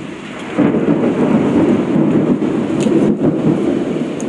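Heavy rainstorm in strong wind, with a loud rumble of thunder that breaks in about half a second in and rolls on.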